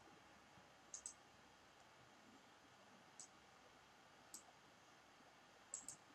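Near silence broken by a handful of faint, sharp computer mouse clicks: a pair about a second in, two single clicks in the middle and another pair near the end.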